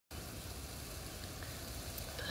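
Steady low rumble of outdoor background noise, with no voice or music yet.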